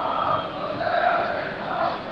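Stadium football crowd chanting together in the stands, many voices blending into one steady sound under the broadcast.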